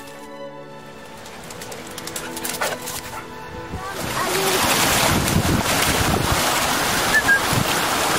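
Background music with long held notes, then about halfway through the loud rush of a shallow moorland stream comes in, with splashing as a Gordon setter wades up it and a few short rising squeaks over the water.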